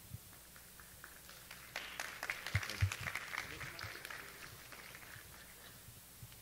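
Light applause from a small audience that starts about a second and a half in, swells, then dies away by about five seconds in, with a couple of low thumps beneath it.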